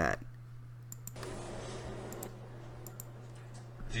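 A few sharp, scattered clicks from computer controls being worked, over a steady low electrical hum.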